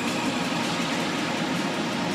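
Electronic music: a steady, noisy synth wash over a low sustained tone.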